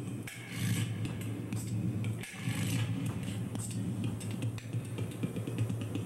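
Live experimental electronic noise performance: a steady low drone with amplified scraping, rattling and clicking of objects over it.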